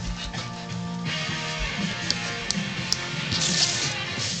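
Background music with held, changing notes, like a plucked guitar, and a few light clicks from card and paper being handled.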